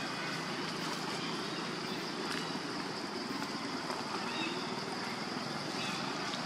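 Steady outdoor background noise with a constant high-pitched hiss running evenly, no distinct sound standing out.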